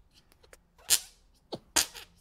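Hands clasped together and squeezed to force air out in hand-fart noises, giving three short, breathy, sputtering bursts about a second in and near the end.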